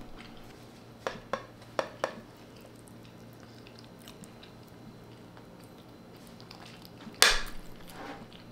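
Metal knife clicking against a ceramic plate four times in about a second as it cuts into fried eggs over rice, then a brief louder scrape of cutlery on the plate near the end.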